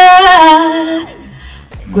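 A woman singing a short test phrase into a vocal microphone through the studio's PA with reverb from the mixer, holding one note for about a second before it falls away into a fading reverb tail.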